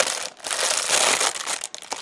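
Clear plastic wrapper around a roll of tape crinkling as hands grip and pull at it, with a brief lull about a third of a second in.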